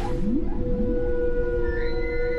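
Whale calls: a few short rising whoops near the start, then a long, steady moaning tone, over background music.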